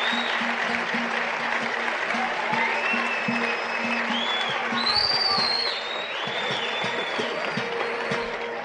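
A live audience applauding over plucked oud notes, with a few high gliding melodic lines from the accompanying ensemble.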